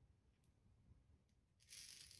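Near silence, with faint clicks of a plastic sprinkle container's lid being handled and a short soft rustle near the end.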